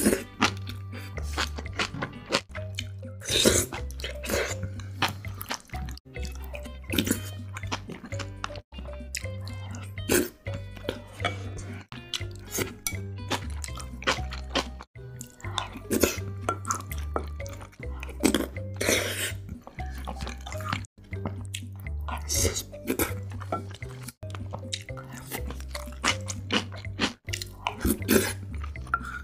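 Background music with a steady bass line under close-miked eating sounds: wet chewing and smacking of beef hayashi rice and kimchi, with many short clicks throughout.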